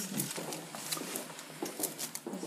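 Wicker basket creaking and crackling in a few short clicks, with a soft rustle, as a hand strokes a ginger cat sleeping inside it. A low, quiet voice-like hum sounds near the start.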